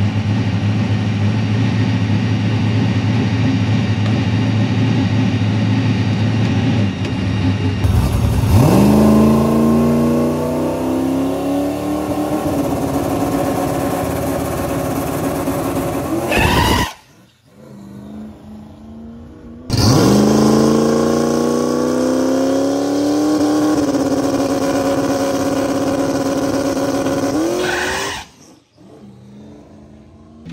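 Turbocharged Mustang drag car's engine running steadily, then twice going to full throttle with its pitch climbing and holding high for about eight seconds, each burst cutting off abruptly. This is a launch where the tires spin at the line instead of hooking.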